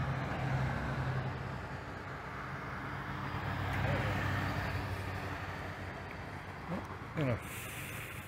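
A steady low hum of distant engines and machinery, swelling slightly about four seconds in.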